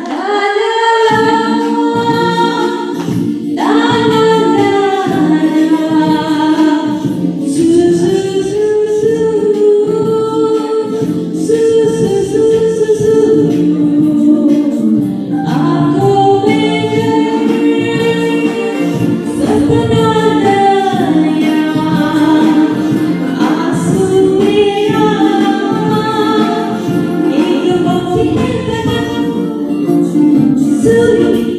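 A woman singing a Bollywood film song into a handheld microphone over a karaoke backing track, with long held notes that slide between pitches.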